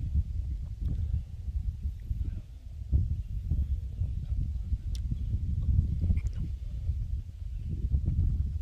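Wind buffeting the microphone: an uneven low rumble that rises and falls in gusts, with a few faint clicks.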